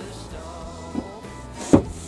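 Background music, with two dull knocks: a small one about a second in and a louder one near the end, as a cut rubber tyre section is set against a wooden plank and handled into place.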